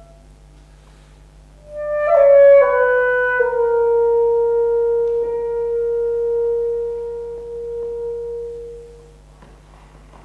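Alto saxophone, starting about two seconds in: a quick run of notes stepping downward, settling on one long held note that fades away after about five seconds.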